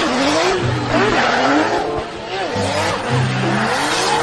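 A BMW drift car sliding through a drift: its engine revs rise and fall while the rear tyres squeal against the tarmac in a steady hiss.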